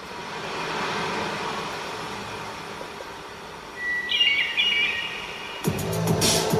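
Opening soundtrack of an expedition film playing through room speakers: a swelling ambient wash, a few short high chirping tones about four seconds in, then electronic music with a beat starting just before the end.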